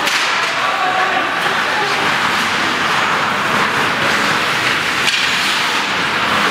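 Ice hockey play heard from rinkside: skate blades scraping across the ice in a steady hiss, with a sharp clack from a stick or the puck about five seconds in, and faint shouting in the arena.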